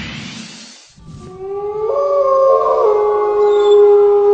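Held tones in a soundtrack: a rising sweep fades out within the first second, then after a brief gap long sustained tones come in and step to new pitches twice.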